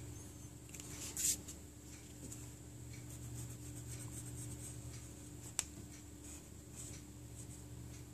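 Faint pencil and eraser strokes scratching and rubbing on drawing paper, with a brief louder rustle about a second in and a single sharp click about halfway through, over a steady low hum.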